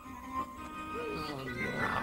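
A cartoon demon's voice making a long, wordless, wavering sound that falls in pitch, with a breathy end, over background music.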